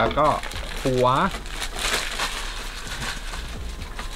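Clear plastic packaging crinkling as a figure's head piece is unwrapped by hand, a continuous crackly rustle from about a second and a half in.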